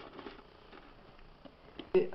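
Quiet room tone with a few faint scattered ticks, opening with a sharp click.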